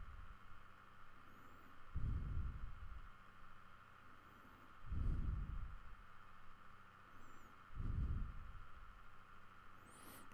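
Three soft, low puffs of breath on a close microphone, about three seconds apart, over a faint steady hum.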